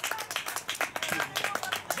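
A small group of people clapping their hands, in scattered, uneven claps rather than a crowd's applause.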